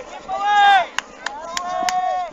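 Raised, high-pitched voices of people on the ground calling out, their pitch swinging up and down. A few sharp clicks come about halfway through and again near the end.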